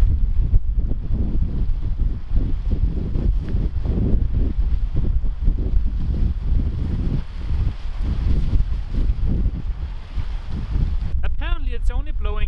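Gusty wind buffeting the microphone through a furry windshield, a heavy uneven rumble that swells and dips with the gusts. A man starts talking near the end.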